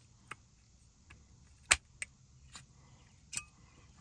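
Hand snips cutting the corner off a car speaker's mounting tab: four separate sharp clicks, the loudest a little before halfway.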